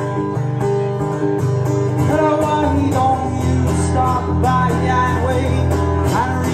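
Acoustic guitar strummed in a steady rhythm, about three strums a second, with a man singing over it.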